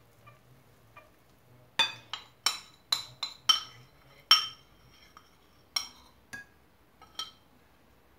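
Metal wire whisk clinking against a glass mixing bowl while stirring: a quick run of about seven sharp, ringing clinks starting about two seconds in, then three or four scattered ones.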